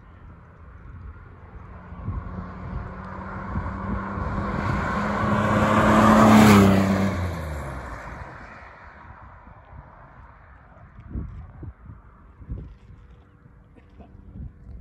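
1965 Corvair Corsa's turbocharged air-cooled flat-six, converted to fuel injection, driving past: the engine note grows louder to a peak about six and a half seconds in, then drops in pitch and fades as the car pulls away.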